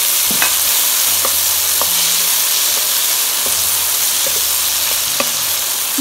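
Cauliflower florets and sausage slices sizzling in butter in a non-stick frying pan, stirred with a wooden spatula that clicks against the pan now and then.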